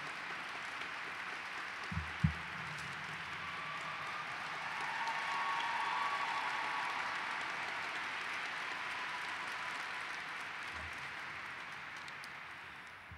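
Audience applauding, swelling to its peak around the middle and slowly dying down, with two low thumps about two seconds in.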